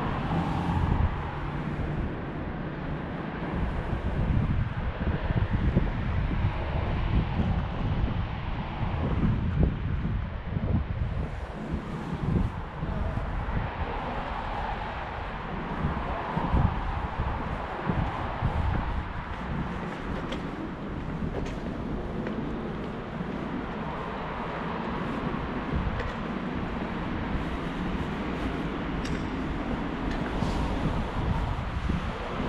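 Wind buffeting the microphone, a heavy, gusty rumble, over a steady outdoor background of passing road traffic.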